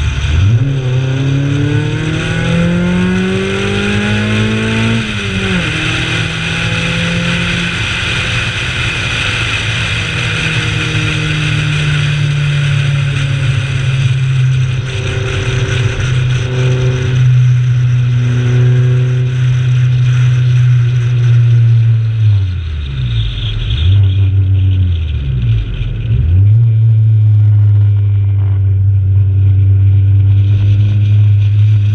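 Honda CRX four-cylinder engine driven hard on a race track. The revs climb for about five seconds to an upshift, then hold high for a long stretch. A little past two-thirds of the way through the revs dip sharply twice before pulling steadily again. A steady rushing noise runs underneath.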